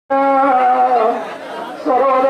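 A man's voice chanting a prayer in long, held notes. The pitch slides down about a second in, and the voice fades briefly before resuming near the end.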